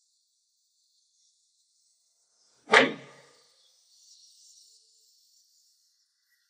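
A single sharp hit about three seconds in, fading over half a second, over a faint steady hiss.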